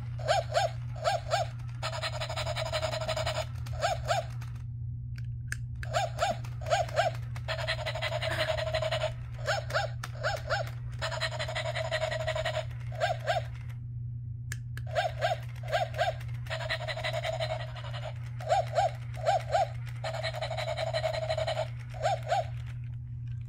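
Battery-operated plush Dalmatian toy puppy playing its recorded dog sounds in a repeating loop: sets of two or three short yips alternating with longer stretches of panting. The sound cuts out twice briefly, over a steady low hum.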